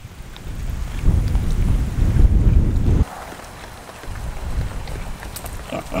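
Wind buffeting the microphone as a low rumble, loudest for about two seconds and then cutting off suddenly, before a weaker gust returns. Pigs grunt faintly near the end.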